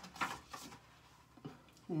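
A paperback picture book's page being turned by hand: a short papery rustle in the first half-second or so, then quiet with a small tap about a second and a half in.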